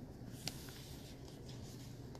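Quiet meeting-room tone: a steady low hum with faint rustling and small ticks, and one sharp click about half a second in.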